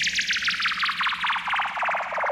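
DJ remix sound effect: a rapidly stuttering noise sweep falling steadily in pitch, over a faint low hum.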